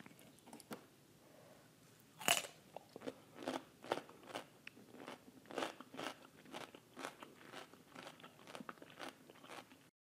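A bite into a crisp raw cucumber slice about two seconds in, then steady crunchy chewing at about two to three crunches a second.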